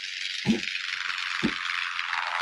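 Cartoon sound effects: a steady hissing rattle, with two low thumps about a second apart.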